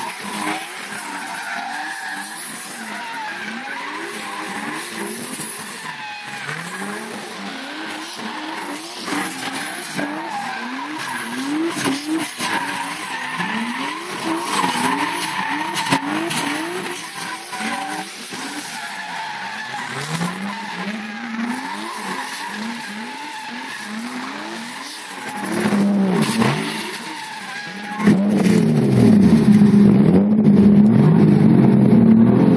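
Tandem drift cars' engines revving up and down over and over as they slide sideways, with screeching tyres. Near the end it gets louder as a car comes close.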